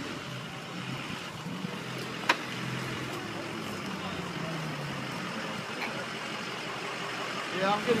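Off-road pickup truck's engine running as it drives, its pitch dipping slightly in the middle, with a single sharp click a little over two seconds in. A man's voice starts near the end.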